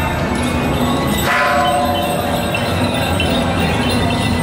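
Temple procession music with metallic bell-like ringing. A bright ringing strike a little over a second in fades over about a second.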